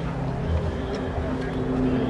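Steady low hum of an idling vehicle engine, with indistinct voices in the background.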